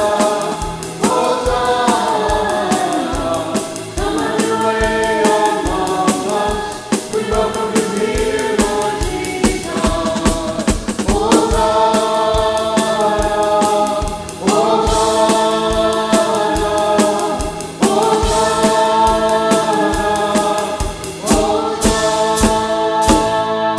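A church worship team singing a 'Hosanna' praise chorus in harmony, backed by a drum kit and keyboard. The voices hold long chords in phrases of a few seconds each over a steady drum beat.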